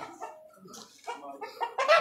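A chicken clucking in short calls.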